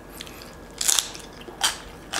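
Crispy roast pig (lechon) skin crunching as it is bitten and chewed, with a couple of short, louder crunches about a second in and a little after halfway.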